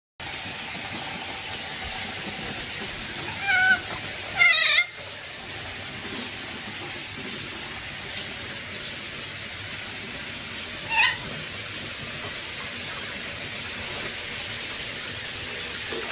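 Otter giving three short, high chirping calls over a steady hiss of water: one about three and a half seconds in, a louder wavering trill just after it, and a last one near the eleven-second mark.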